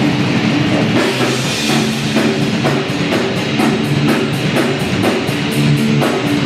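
Heavy metal band jamming: two electric guitars playing a riff over a drum kit, cymbals struck on a fast steady beat.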